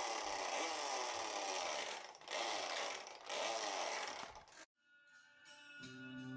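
Electronic motorbike-engine sound effect from the battery-powered sound unit on a children's motorbike-style bike: loud revving with rising and falling pitch, in three stretches with short breaks, cutting off suddenly past the middle. Soft music with bell-like tones starts near the end.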